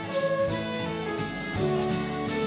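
Live acoustic band playing an instrumental passage: acoustic guitar, double bass and drums under a woodwind melody of held notes that change about every half second.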